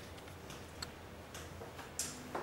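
A few faint, separate clicks from laptop keys pressed to change the slide, over a quiet steady room hum.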